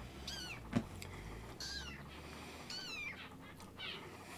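Kitten mewing: three short, high-pitched mews about a second apart, each rising and then falling in pitch. A single sharp click sounds between the first two mews.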